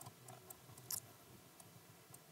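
Near silence: faint room tone with a few small clicks, the loudest about a second in.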